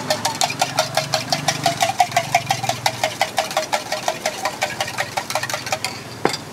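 Metal fork or spoon beating eggs in a stainless steel mug, clinking rapidly and evenly against the sides at about eight strokes a second. The beating stops just before the end.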